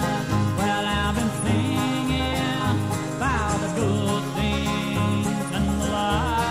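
A string band playing an instrumental passage of a country song: a bass moving between two notes about twice a second under a lead line with sliding, bending notes.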